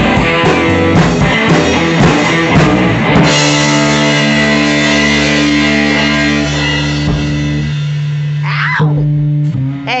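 Live rock band, electric guitar through an amplifier with a drum kit, playing loud. About three seconds in the drums stop and a guitar chord is held, ringing on and thinning out near the end, before a shouted "hey" at the very end.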